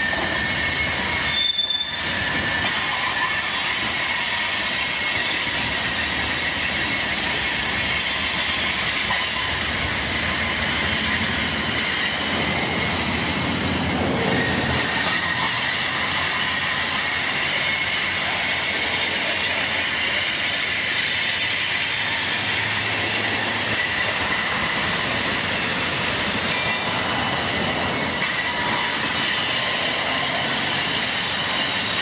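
Long freight train rolling slowly past, steel wheels squealing steadily against the rails, with a little clickety-clack. There is a brief break in the sound just under two seconds in.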